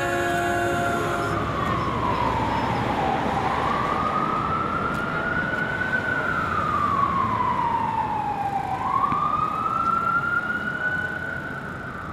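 A siren wailing slowly, its pitch falling and rising in long sweeps about every five to six seconds, over a steady rumble of street noise.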